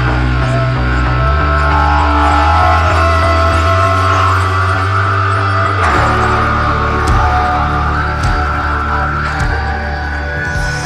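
Instrumental rock backing track with no lead vocal: sustained bass notes and a held melody line, with a few sharp drum hits in the second half.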